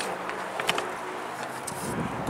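Low outdoor background noise in a pause between speech, with a few faint, light clicks about half a second in.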